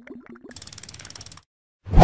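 Motion-graphics sound effects: a few short bubbly blips, then a rapid ratcheting click run of about ten clicks a second lasting about a second. A low thump with a short whoosh comes near the end.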